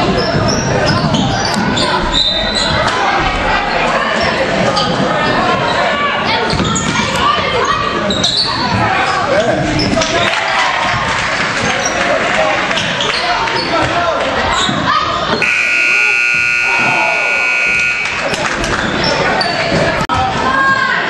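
Gym scoreboard buzzer sounding one steady tone for about two and a half seconds near the end, as the game clock runs out to 0.0 at the end of the period. Under it are a basketball dribbling and players' and spectators' voices echoing in the gym.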